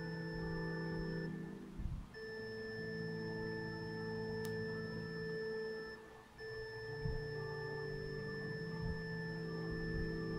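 Soft instrumental communion music at Mass: sustained keyboard chords that change slowly every few seconds, breaking off briefly twice.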